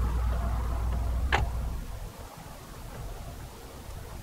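Rear disc brake caliper being pushed back into place over the pads, with a single sharp metal click about a second and a half in. A low rumble runs underneath and fades out about two seconds in.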